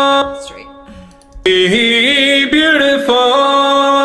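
A male pop vocal played back on its own from Melodyne: a held note trails off, then a short sung phrase ('be beautiful') ends on a long held note. Its pitch has been edited straight, with no vibrato waver.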